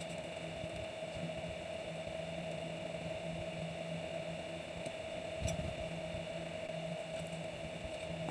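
Quiet room tone with a steady low hum, and faint snips of scissors cutting thin craft foam, one a little more distinct about five and a half seconds in.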